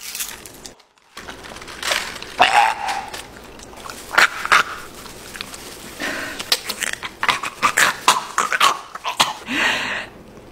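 Two men gagging and whimpering in disgust while chewing foul-tasting novelty candies, in short irregular bursts of retching noises and strained vocal sounds.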